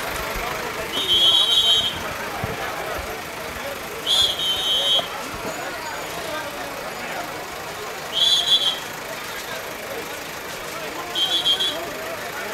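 Four short, shrill whistle blasts a few seconds apart, over crowd chatter and the steady running of a backhoe loader's diesel engine.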